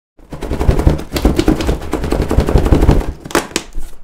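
A rapid, dense string of sharp cracks with deep booms underneath, like automatic gunfire, running for about three seconds and ending in a few separate louder cracks.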